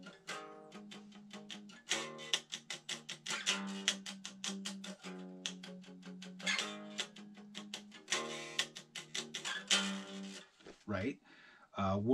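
Eight-string electric guitar playing a chord cadence with fast, evenly picked strokes, the chord changing every second or two.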